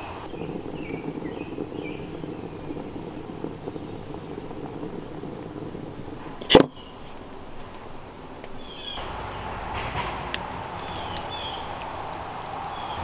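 Quiet outdoor ambience with a few faint bird chirps and one sharp click about halfway through. For the last few seconds, a wood fire in a rocket stove's feed burns with a low rush and a few small crackles.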